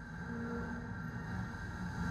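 Cinematic logo-reveal sound design: a low drone with a few steady held tones over it.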